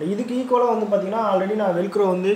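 A man's voice talking continuously, speech only; no other sound stands out.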